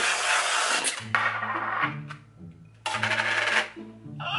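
Aerosol whipped-cream can spraying onto a plate in three bursts of hissing and sputtering, the last ending just before the end.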